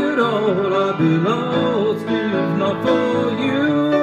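Piano accompaniment under a man's singing voice holding and bending long, wavering notes.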